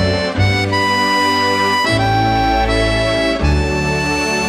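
Serenellini button accordion playing a slow lament: long held melody notes over sustained bass chords that change roughly every second and a half.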